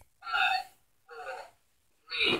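Sound effect played by the Ultimate Saturn V rocket playset after its button is pressed: short, breathy, voice-like bursts about once a second.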